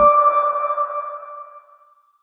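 Closing audio logo sting for BIG Comedy Network: a single bright ringing chime tone that fades out over about two seconds.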